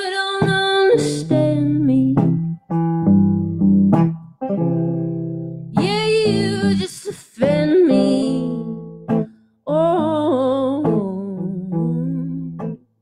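A woman singing a slow song in long, wavering held notes, accompanied by a hollow-body electric guitar, with short breaks between phrases.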